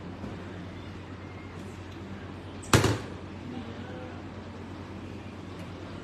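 A single short, loud thump about three seconds in, over a steady low hum.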